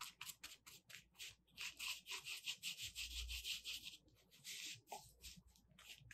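Paintbrush stroking thick acrylic house paint onto fusible interfacing laid on paper: a faint run of short, rapid brush strokes, busiest in the middle.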